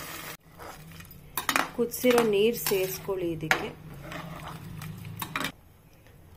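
Water pours briefly into a pressure cooker at the start, then a steel perforated ladle clinks, knocks and scrapes against the aluminium pot as the rice and vegetables are stirred, a string of sharp metal-on-metal strikes that stops about five and a half seconds in.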